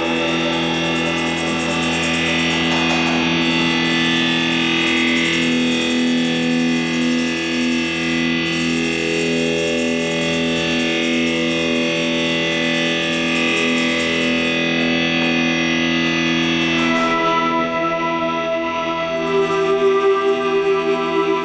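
Live band music in a slow drone passage: sustained electric guitar through effects with long held keyboard tones, no drum beat. A new set of higher held notes comes in a few seconds before the end.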